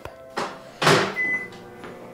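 Microwave oven being used: its door knocks shut twice, the second louder, then a single short high beep from the keypad.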